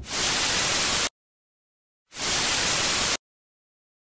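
Television static sound effect: two bursts of even hiss, each about a second long, starting and stopping abruptly with a second of dead silence between them.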